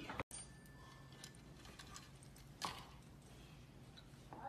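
Quiet room tone with a few faint, scattered clicks and one sharper click about two and a half seconds in. The sound cuts out completely for a moment just after the start.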